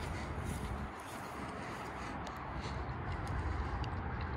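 Steady outdoor background noise with a low rumble and a few faint ticks.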